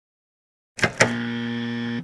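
Two sharp clicks a little under a second in, then a steady low electronic buzz lasting about a second: a cartoon reject buzzer, sounding as the scanner gate's light turns red.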